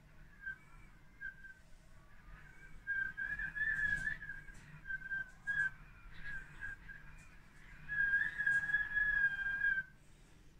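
Storm wind whistling through window roller shutters: a single high, wavering whistle that swells about three seconds in and again near the end, then cuts off suddenly.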